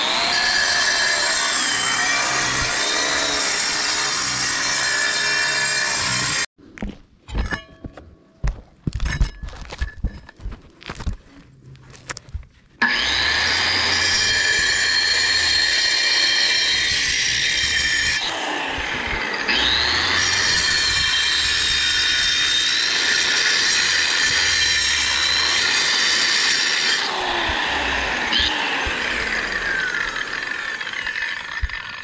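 Angle grinder cutting a kerf into the brick chimney's mortar joint, a loud high whine whose pitch dips and recovers as the blade loads in the mortar. About six seconds in it stops suddenly, leaving scattered knocks and clicks for several seconds, then it comes back at full speed and runs on.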